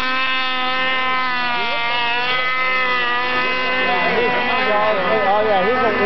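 Snowmobile engine at full throttle on a hill-climb run, held at a steady high pitch after revving up, easing slightly about halfway through. From about four seconds in, voices talk over it.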